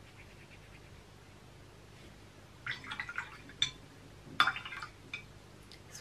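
Faint swish of a watercolour brush on paper, then a series of small clicks and knocks as the brush and paint palettes are handled and set down on the table, the sharpest knock about four and a half seconds in.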